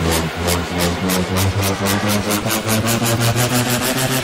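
Progressive house music from a DJ mix: a rolling bass line under a steady ticking hi-hat pattern.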